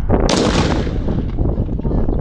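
A field gun firing a single shot about a third of a second in: one sharp, very loud blast followed by a rumbling echo that fades over about a second.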